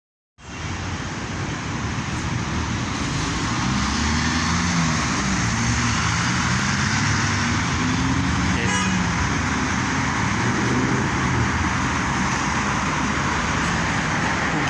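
Road traffic on a busy city street: a steady wash of car and van noise, with engine hum rising and falling as vehicles pass.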